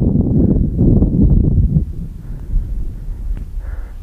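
Wind buffeting the camera microphone in loud, low, irregular gusts that ease off about two seconds in.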